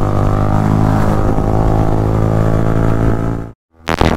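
Sport motorcycle engine running at steady cruising revs as the bike rides. The sound cuts out abruptly for a moment near the end, then resumes.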